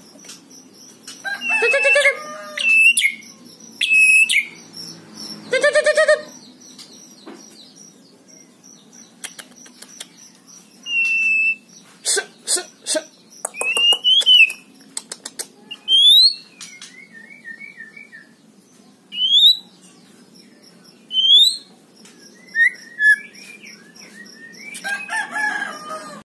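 Young white-rumped shama giving short sharp whistled notes at intervals, several of them quick rising whistles, with some chattering notes and clicks between. A chicken calls twice in the background during the first several seconds.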